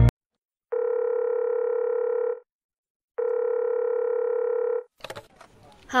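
A ringtone cuts off, then two long, steady telephone line tones sound, each about a second and a half with a short gap between, as the call goes through. Faint line crackle follows just before a voice answers.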